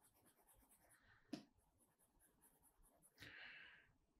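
Near silence with faint scratching of a stylus on a drawing tablet as short hatching strokes are drawn, a single soft tick about a second in, and a brief scratch near the end.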